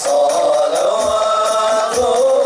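A group of men singing an Islamic sholawat together into microphones, with the frame drums silent.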